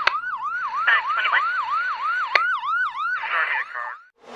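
Electronic emergency-vehicle siren in a fast yelp, its pitch sweeping up and down about three times a second, with a few whooshing bursts and two sharp hits layered over it. It cuts off suddenly just before the end.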